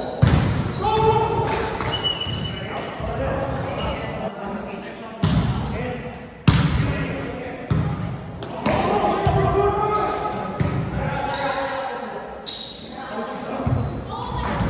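Volleyball rally in a gym: the ball is struck in a series of sharp smacks, about seven of them, with players shouting and calling to one another. Each hit echoes in the large hall.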